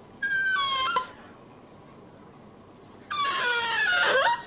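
Border terrier whining twice: a short whine that steps down in pitch just after the start, then a longer whine about three seconds in that slides down in pitch.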